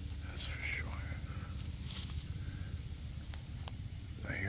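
Helicopter flying over, its rotor a steady low throb, with a few brief rustles on top.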